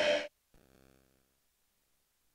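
The broadcast sound cuts off abruptly about a quarter second in, followed by silence: a dead-air gap at the switch to a commercial break.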